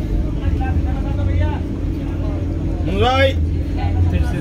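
Steady low rumble and hum inside a Vande Bharat Express coach as it rolls slowly past a crowded platform, with voices from the crowd. A single loud rising shout comes about three seconds in.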